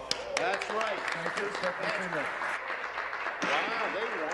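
Legislators applauding in a debating chamber, with several voices calling out over the clapping.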